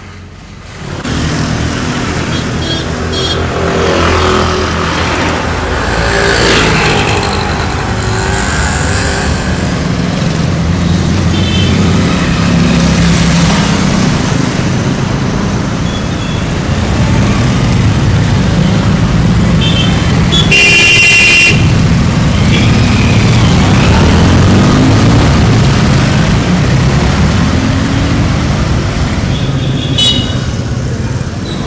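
Road traffic: motor vehicles running past close by, with horns tooting a few times and one longer honk about two-thirds of the way through.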